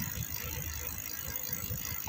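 Bicycle rolling along a concrete road, picked up by a phone mounted on the handlebar: an uneven low rumble of wind and road vibration.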